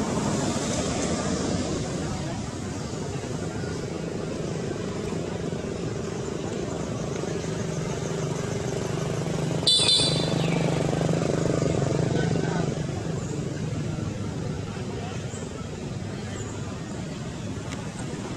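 Motor vehicle engine running steadily, growing louder about halfway through and then fading away, with a brief sharp, high-pitched sound at its loudest point.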